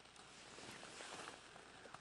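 Near silence: faint background hiss with a few soft ticks.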